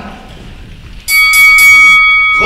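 A bell rung about a second in, three quick strikes that then ring on with a steady tone, signalling the change of round.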